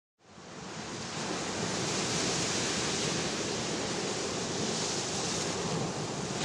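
Ocean surf: a steady rush of waves that fades in just after the start.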